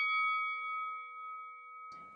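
A boxing-ring bell ringing out with a clear metallic tone that slowly fades away.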